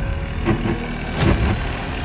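Trailer sound design: a steady, deep rumbling drone with a heavy thump about every three quarters of a second, a slow pulsing beat.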